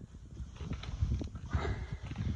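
Soft irregular knocks and low rumbling from a handheld phone's microphone being moved about, with a brief hiss near the end.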